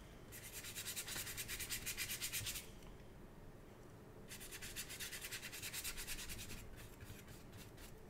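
A big flat brush laden with ink scratching across paper in quick, repeated hatching strokes. There are two spells of rapid strokes, each lasting about two seconds, with a quieter pause between them.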